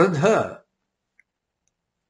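A man's voice speaking German, the last word ending about half a second in, then near silence with one faint click.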